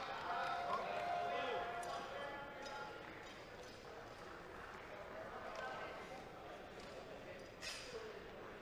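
Indistinct voices echoing in a large arena hall: one held, raised voice in the first second or so, then a faint murmur. A single sharp knock comes near the end.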